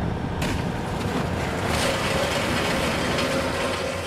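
Steady machinery noise from a crane lowering an orange-peel grab bucket on its chains into harbour water. A hiss comes in about half a second in, and a faint steady whine joins in the second half.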